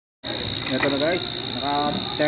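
After a moment of silence, the motor pulling a vacuum on a refrigerator's sealed system cuts in, running with a steady high-pitched whine over a low hum. A man's voice talks over it.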